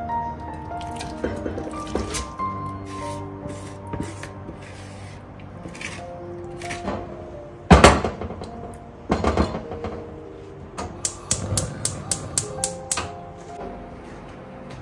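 Background music over kitchen handling noises as sour cherries are tipped from a plastic bowl into a stainless steel pot and the pot is moved on the gas stove. The loudest sound is a hard clunk a little under eight seconds in, the steel pot set down on the stove's grate, followed later by clusters of sharp clicks.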